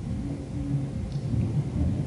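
Low, uneven background rumble with no speech.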